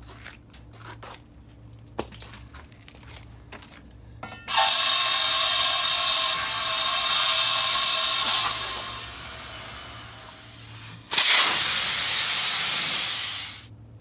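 Loud rushing hiss at the valve stem of a 14.00-24 forklift tire, where a hose fitting is connected. The first hiss lasts about six seconds and fades over its last couple of seconds. After a brief break, a second hiss lasts about two and a half seconds and tails off. Light clicks and knocks come before the first hiss.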